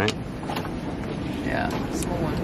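Strong gusty wind rushing over the anchored sailboat, with a short creak about one and a half seconds in.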